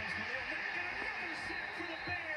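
Television NFL broadcast heard through the TV's speaker: a commentator talking over a steady stadium crowd din.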